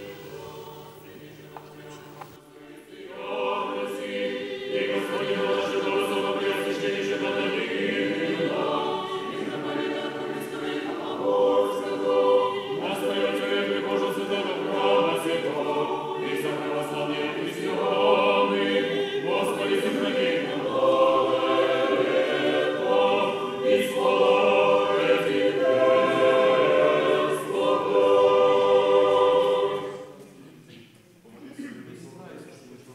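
Orthodox church choir singing a liturgical hymn without instruments, coming in about three seconds in with sustained chords and breaking off at the very end.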